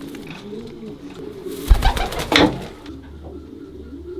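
Racing pigeons cooing in a loft, a low wavering coo, with a thump and a short rustling burst about halfway through.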